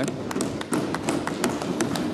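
Debating-chamber noise: a steady murmur with many scattered, irregular sharp taps and knocks.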